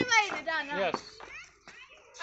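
Children's high-pitched voices calling and chattering through about the first second, then dying away.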